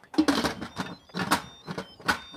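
Instant Pot lid being set onto the pressure cooker and twisted closed: a few short clattering scrapes and clicks of the plastic lid against the steel pot rim.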